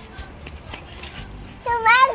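A cat meows once near the end, a short call that rises slightly in pitch and then falls away.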